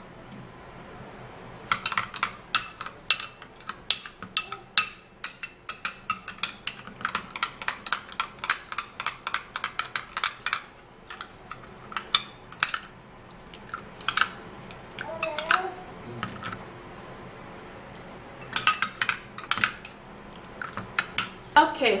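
A metal spoon stirs a clay-and-milk face-mask paste in a glass bowl, clinking rapidly against the glass. The clinks come in long runs, with quieter pauses about midway and again a little later.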